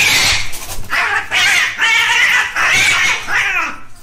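Two domestic cats fighting: a string of about five loud, harsh screeches and yowls that bend up and down in pitch, with short breaks between them.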